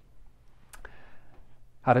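A single short, sharp click from a handheld presentation remote's button pressed to advance the slide, about a third of the way in, during a pause in speech.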